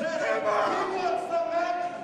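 Several voices from a small wrestling crowd shouting, with long drawn-out yells that overlap.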